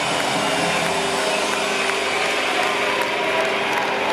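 Live rock band holding the song's final chord: a steady wall of distorted electric guitar and cymbal wash, with a few held tones ringing through. Scattered claps from the crowd start near the end.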